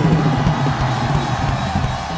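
Live soul-funk band playing a driving groove, with drum kit hits and a repeating bass line out front.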